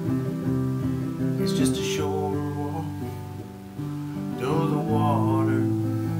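Acoustic guitar strummed and picked in a folk-song chord pattern, an instrumental passage with no singing.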